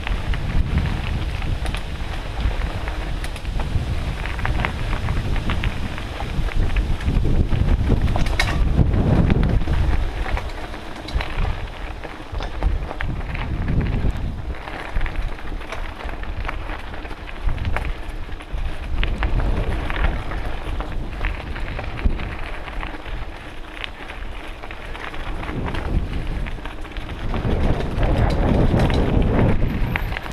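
Wind buffeting a helmet-mounted camera's microphone while riding a mountain bike along a dirt trail, swelling and easing in gusts, louder about a third of the way in and near the end. Scattered clicks and rattles come from the bike over rough ground.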